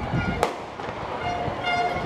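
A single starting-gun shot about half a second in, sending the 100 m hurdlers off the blocks.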